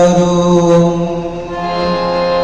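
Devotional Hindu chant to Hanuman, a voice holding one long note at the end of a verse line over musical accompaniment.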